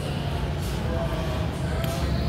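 Noise from a rowdy group of people: music with a heavy, steady bass under indistinct voices.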